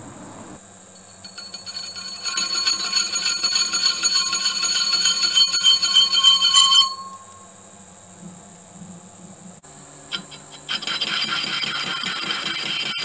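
Metalworking lathe running with an aluminium V-belt pulley in the chuck while a cutting tool machines the chamfer on its bore: a high ringing whine from the cut builds for a few seconds and stops suddenly, leaving the lathe running. A new cut starts near the end.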